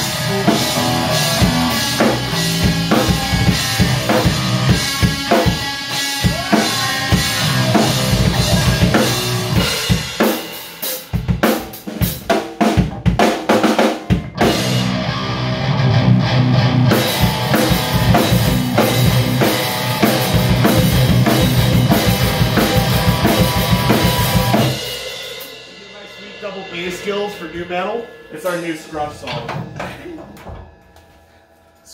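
A rock band playing live and loud: electric guitars, bass and a drum kit. About ten seconds in, the sound thins to the drums alone for a few seconds before the full band comes back. About 25 seconds in the song ends and the sound drops to quieter ringing tones and a few scattered drum hits.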